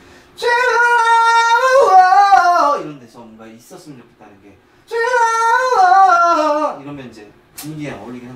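A singing voice holds a high note and then slides down through a short falling phrase, twice, each phrase about two seconds long with a pause between. The high note is sung lightly, passing over easily rather than pushed.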